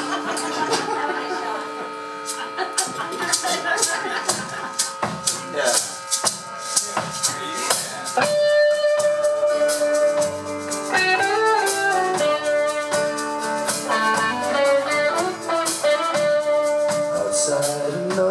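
Live band with guitars, upright bass and drums playing an instrumental introduction: held chords over a steady shaker-like beat, then a bending melodic lead line entering about eight seconds in.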